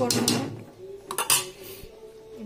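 A metal spatula scraping and knocking against a stainless steel kadai while stirring chicken curry, in two bursts: at the start and again about a second in.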